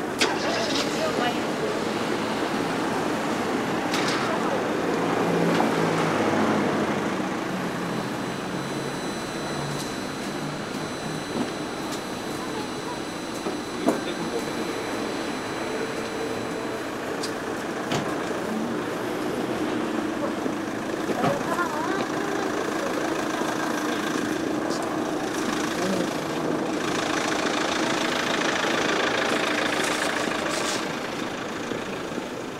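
City street ambience: passers-by talking, and in the second half a car's engine running as the car creeps along the street.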